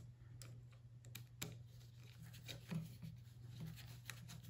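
Faint, irregular small clicks and ticks of a small screwdriver working a screw into the motor mount of a plastic robot chassis, over a low steady hum.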